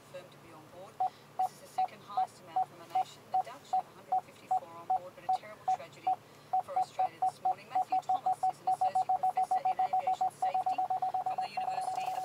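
A car's parking sensor beeping as it closes on an obstacle: single-pitched beeps start about a second in at roughly three a second, quicken from about eight seconds, and run together into an almost continuous tone near the end, the sign that the car is very close to something.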